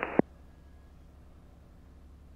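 A radio voice transmission ends just after the start and is cut off by a short squelch click. After that there is only a faint, steady low drone on the headset intercom feed, the idling engine's sound.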